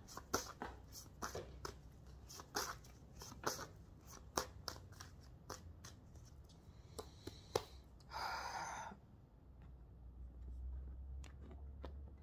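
A tarot deck being shuffled by hand: soft, irregular card clicks and slaps, with a brief louder rustle about eight seconds in.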